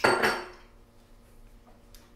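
A single sharp clink of kitchenware, ringing briefly and fading out within about half a second.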